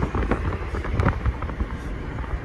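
A car driving, heard from inside the cabin: steady low road and engine rumble with a light click about halfway through.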